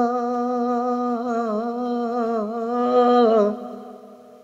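A man singing a devotional naat holds one long wordless note, steady at first, then wavering in pitch with ornaments from about a second in, and fading out near the end.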